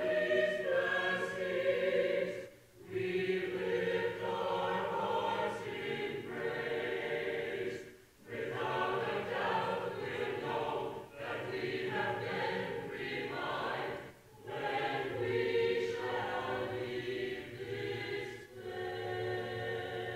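Church choir singing, its phrases separated by brief pauses about every five to six seconds.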